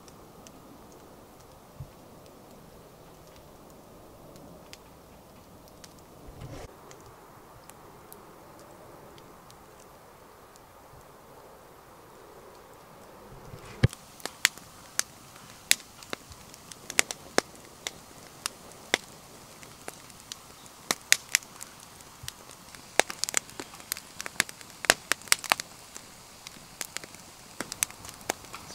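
A wood campfire of stacked branches crackling and popping irregularly, starting about halfway in; before that only a faint steady background hiss.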